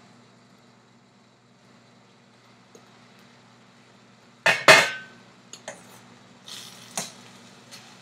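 A quiet first half, then a loud double metal clank about halfway through as a glass pan lid with a steel rim is set down. Scattered lighter taps and scraping follow as a spatula stirs the milk-cooked bottle gourd curry in the stainless steel pan.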